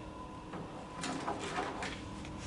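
Sheets of paper rustling as they are handled at a table, a short run of scratchy rustles starting about a second in.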